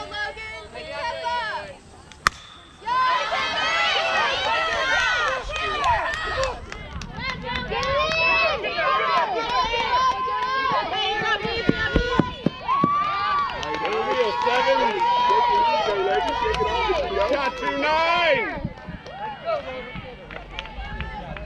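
A softball bat hits the ball with a single sharp crack about two seconds in. Right after it, many voices cheer and shout over one another for about fifteen seconds, thinning out near the end.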